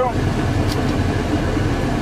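Cummins ISC diesel engine of a Freightliner M2 truck idling steadily, heard from inside the cab, with the PTO engaged to drive the water pump.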